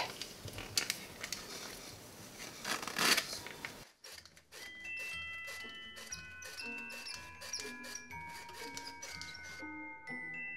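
Hand-crank metal flour sifter being cranked over a bowl: a soft rasping scrape of flour through the mesh, louder about three seconds in. About four seconds in it cuts off, and a light bell-like mallet melody of background music takes over.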